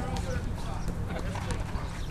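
Low rumble of wind on the microphone on an outdoor handball court, with faint distant voices and a few light knocks.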